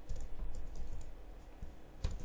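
Typing on a computer keyboard: a quick run of keystrokes, most in the first second, with a few more near the end.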